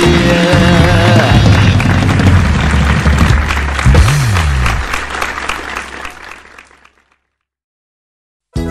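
Live stage music with audience applause from a Polynesian dance show. The sound fades out to silence about seven seconds in.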